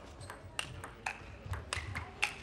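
Celluloid table tennis ball being struck by rubber bats and bouncing on the table: a run of sharp, hollow ticks at uneven intervals of about a quarter to half a second, some with a brief high ring.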